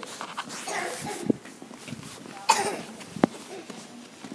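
A person's short cough-like burst about two and a half seconds in, among brief bits of voice and a couple of sharp knocks.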